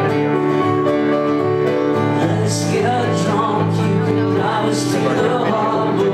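Live solo piano song: piano chords ring steadily, and a male voice starts singing over them about two seconds in.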